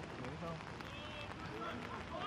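Scattered distant shouts and calls from rugby players on the pitch during open play, over a steady outdoor background noise.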